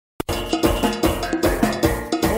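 Live soca band music cutting in abruptly a fraction of a second in: a steady, evenly repeating percussion beat under a bouncing bass and keyboard line.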